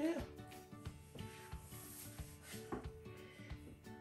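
Quiet background music with a few soft clicks and knocks of a knife cutting open a ripe avocado.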